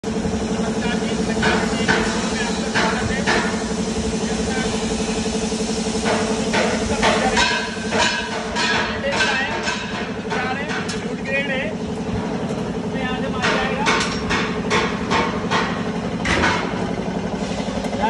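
Workshop machinery noise: a steady motor hum with irregular metal knocks and clicks over it.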